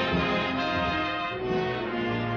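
Orchestral film score with brass playing long sustained chords.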